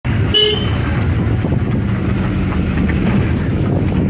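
Road and engine noise inside a moving car's cabin, a steady low rumble, with a short car-horn beep about a third of a second in.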